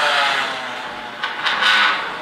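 Rally car engine noise from a car leaving the start line, heard from inside a waiting car. It fades over the first second, then swells again in a couple of rushes.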